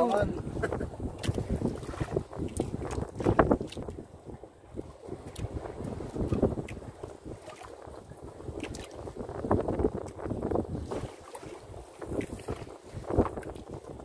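Wind buffeting the microphone in a low rumble, over the rustling and knocking of a fishing net being hauled by hand over the side of a small boat, with a few louder handling bursts.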